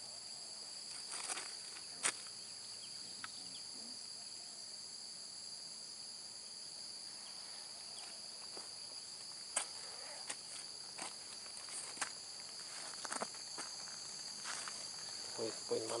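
Steady high-pitched chorus of insects, with a few short clicks scattered through it.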